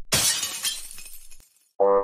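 Car-crash sound effect with breaking glass: a sudden smash that dies away over about a second and a half. Near the end a held, pitched tone begins.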